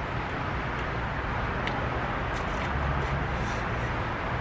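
Steady outdoor background noise with a low rumble, like distant road traffic, with a few faint crisp clicks in the second half.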